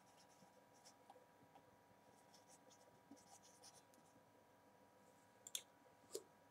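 Faint squeaks and scrapes of a felt-tip marker writing on a whiteboard, with a sharp tap near the end.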